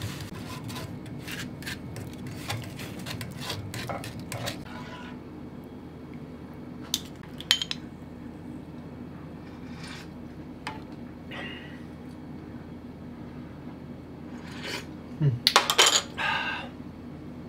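A spatula scraping and tapping against a fine metal miso strainer and a hammered aluminium saucepan as miso is pressed through into broth: a quick run of clicks and scrapes for the first few seconds, then a few separate clinks, and a louder clatter near the end. A steady low hum runs underneath.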